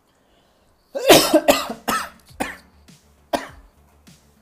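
A person's voice in about five short, breathy bursts, like laughing or coughing. The first and loudest comes about a second in, and the rest fade off over the next two seconds.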